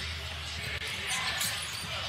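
Basketball being dribbled on a hardwood court, over a steady low background hum.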